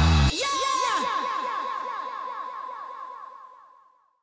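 Electronic outro sound effect: the soundtrack's bass cuts out about a third of a second in, leaving a quick, echoing run of falling chirps over a steady high tone that fades away to nothing by the end.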